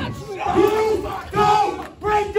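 A person yelling: two long, drawn-out shouts without words, one after the other, over crowd noise.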